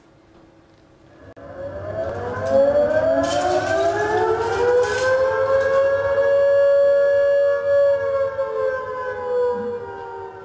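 Wailing siren sound effect that starts about a second in, climbs slowly in pitch, holds a steady wail, then begins to wind down near the end.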